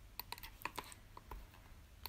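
A quick run of faint, irregular clicks at a computer, most of them in the first second and thinning out after.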